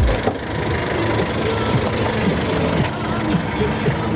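Vehicle engine idling with steady street traffic noise.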